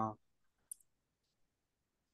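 The end of a drawn-out hesitation "uh" right at the start, then a single brief, high-pitched click about three quarters of a second in; otherwise near silence.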